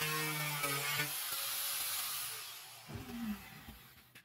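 Handheld angle grinder cutting a curved line through plywood. It winds down after being switched off, its whine falling away about two and a half seconds in, followed by a short knock near the end.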